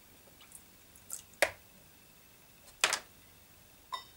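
Hands working in a plastic washing-up bowl of water: a few short splashes and knocks. The sharpest comes about a second and a half in, and a slightly longer splash near three seconds.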